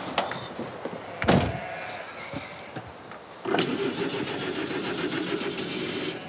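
A vehicle door slams shut about a second in. Then a Land Rover Defender's diesel engine starts suddenly about halfway through and settles into a steady idle.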